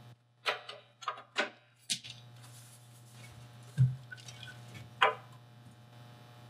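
Plastic snap clips of a Logitech Revue's case clicking and cracking as the shell is pried apart by hand: about six sharp snaps, the loudest near four and five seconds in, over a steady low hum.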